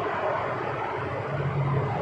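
Steady background noise in a pause between spoken sentences, with a faint low hum coming in during the second half.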